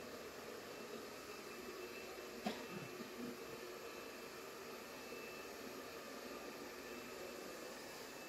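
Faint, steady room hiss with a thin high whine running through it, broken once by a light click about two and a half seconds in.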